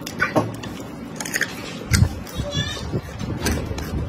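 Close-miked eating sounds: biting and chewing food, with many short wet mouth clicks and a louder low burst about two seconds in.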